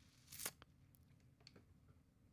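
Near silence, with one brief soft noise about half a second in and a few faint ticks.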